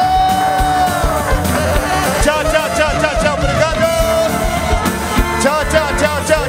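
Live band music with a steady drum beat, and one long note held over it for about four seconds.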